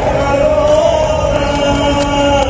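A group of voices singing a devotional chant in long held notes.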